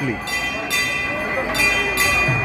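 Temple bells ringing, struck repeatedly about once a second over a steady ring, with crowd voices faintly underneath.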